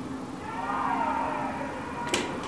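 Cricket fielders shouting an appeal: a drawn-out call of about a second that rises and falls in pitch, from more than one voice.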